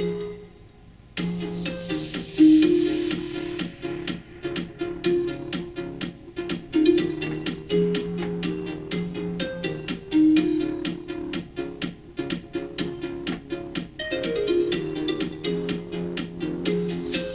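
Homemade Arduino alarm clock sounding its alarm: an MP3 tune of quick plucked-string notes played through small USB-powered speakers. The tune pauses for about a second at the start, then runs on and begins to repeat near the end.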